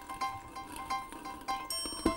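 Background music of light plucked-string notes repeating in a quick, even pattern, about four notes a second.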